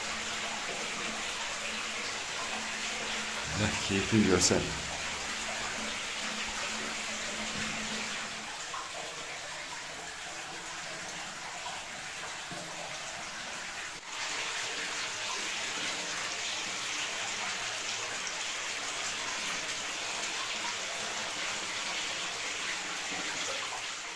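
Water running steadily inside a cave, an even, unbroken rush.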